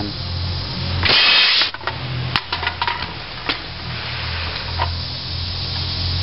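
Homemade CPVC compressed-air carrot rifle firing: a loud blast of air released through its valve about a second in, lasting about half a second. It is followed by several sharp clicks and knocks as the struck soda can is hit and knocked off.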